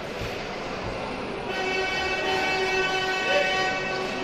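A horn sounds in an ice hockey rink. It begins about a second and a half in and holds one steady pitch for over two seconds, over crowd chatter.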